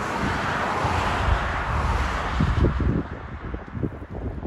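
Wind rumbling on the microphone over a steady rushing noise, which dies down about three seconds in.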